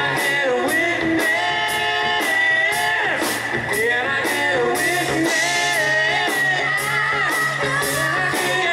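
Live rock band playing: a male lead voice singing over guitars, bass guitar and drums. The drum kit keeps a steady beat, with cymbals struck about twice a second.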